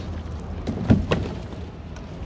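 Large cardboard bike box being handled, its flaps pulled open, with three dull knocks close together about a second in, the middle one loudest, over a low steady rumble.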